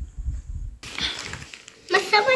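A paper gift bag rustling and crinkling as it is handled, with low handling thumps in the first part.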